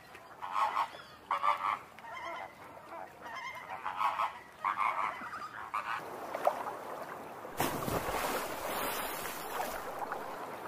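A flamingo colony honking: many short, goose-like calls overlapping. About six seconds in, the calls give way to a steady rushing noise that grows louder near the end.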